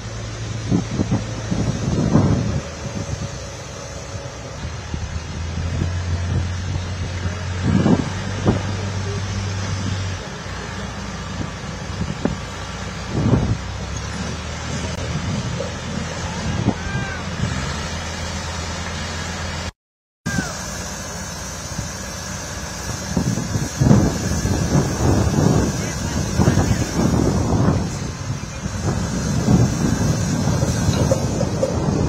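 Construction site ambience. A heavy machine's engine hums steadily at a low pitch through most of the first two-thirds, with scattered knocks and clanks. After a brief dropout about two-thirds in, a busier run of knocks and clatters follows, with wind on the microphone.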